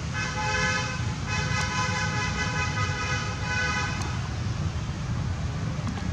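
A vehicle horn honking: a short honk, a brief break, then a long held honk of about two and a half seconds. A steady low rumble of traffic runs underneath.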